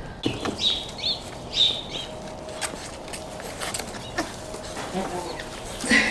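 Birds chirping: several short, high chirps in the first two seconds, then a few faint clicks and rustles.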